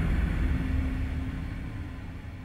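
A deep, low rumble from a horror soundtrack, the tail of a boom, fading away steadily.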